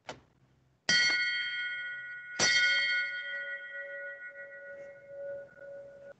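A small wall-mounted bell rung by pulling its cord, signalling the start of the Mass. A light click comes first, then two strikes about a second and a half apart, each ringing on with several clear tones and slowly dying away.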